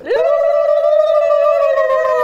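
Kulavai, the Tamil ululation, made with a fast flutter of the tongue behind a hand over the mouth: one long, steady, high trilled call lasting about two seconds that drops slightly at the end.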